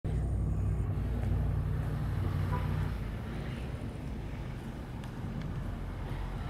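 Low steady rumble of a motor vehicle's engine, easing off about three seconds in.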